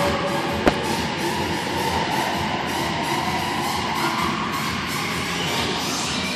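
Music playing over steady background noise in a large hall, with one sharp click a little under a second in.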